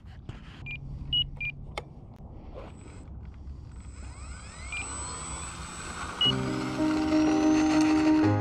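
A few short electronic beeps, then the electric brushless motor and propeller of an RC foam airplane whining higher in pitch as it throttles up for a takeoff roll. Background music comes in about six seconds in and is the loudest sound from there on.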